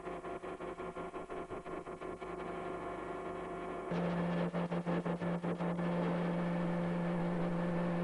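Steady machine hum with a fast pulsing flutter, jumping louder about four seconds in: a servo-hydraulic fatigue testing machine running.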